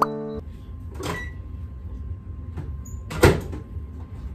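Background music stops just after the start. Then come the knocks of a kitchen cupboard: a light knock about a second in and a sharp, loud bang of a cabinet door about three seconds in, as a bowl is taken out.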